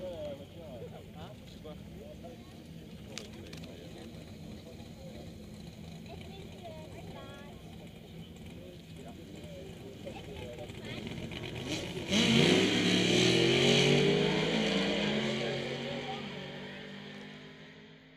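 Drag-racing car's engine idling at the start line under nearby voices, then about twelve seconds in it launches with a sudden loud burst. The engine note rises as the car accelerates away down the strip and fades out.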